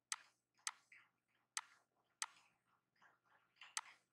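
A computer mouse clicking, about five sharp single clicks at uneven intervals, against near silence.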